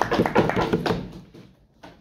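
A few people rapping their knuckles on the desks in quick, irregular knocks, the debating-room applause for a finished speech, dying away about a second in. A single knock sounds near the end.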